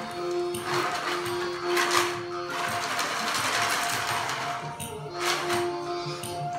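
Traditional Nivkh dance music: rhythmic wooden percussion strikes about once a second over a long held note that breaks off and resumes.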